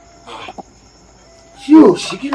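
Crickets trilling steadily in the night background, with a loud human voice calling out near the end.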